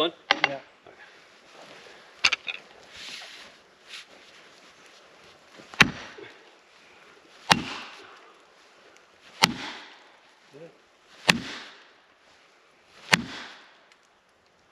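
Poll of an axe striking a felling wedge set in the back cut of a tree, driving it in: six sharp blows roughly two seconds apart, the last five loudest, each ringing briefly.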